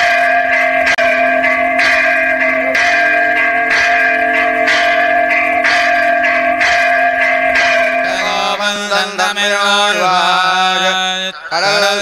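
A temple bell rung with strikes about once a second over steady held tones. About two-thirds of the way through, the bell gives way to a wavering, chant-like melody.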